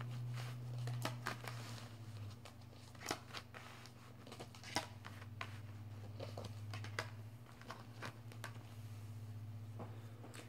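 A deck of tarot cards being shuffled and handled by hand: soft, irregular card rustles and sharp little clicks. A low, steady hum runs underneath.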